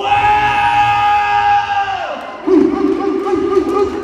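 A man's loud victory shout into a handheld microphone, held for about two seconds before falling away, followed by a second, rougher wavering yell.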